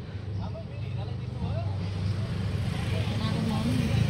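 A low, steady motor-vehicle engine rumble that grows slowly louder, with faint voices murmuring underneath.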